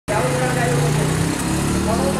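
A motor vehicle's engine running steadily, with a person's voice over it.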